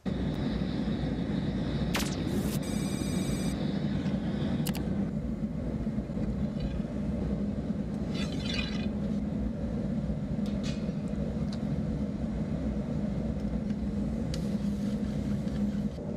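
Steady low roar of a gas-fired glassblowing furnace, with a sharp click about two seconds in, a brief high rattle just after it, and a short higher hiss around the middle.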